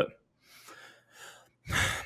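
A man breathing close to a microphone in a pause in his speech: faint breaths, then a louder intake of breath near the end.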